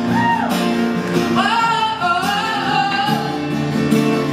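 A woman singing live with a microphone, her voice gliding between held notes, over two acoustic guitars playing chords.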